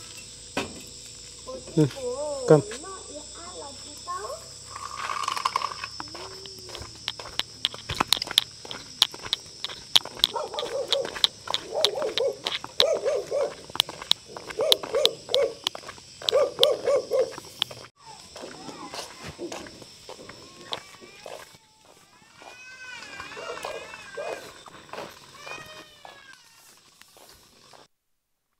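Outdoor rural ambience: insects keep up a steady high-pitched drone that stops about 18 seconds in. Distant voices and calls come and go, and a run of sharp clicks and taps falls in the middle.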